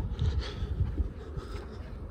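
Uneven low rumble of wind buffeting the microphone, over faint outdoor background noise.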